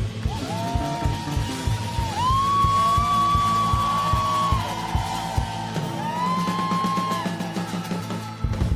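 Live pop-rock band playing: drum kit and bass keep a steady beat under a lead line of long held notes that slide up into pitch, each sustained for a second or two.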